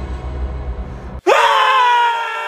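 Two men screaming in fright together, starting abruptly a little over a second in, swooping up and then held loud. Before it there is a low, steady drone.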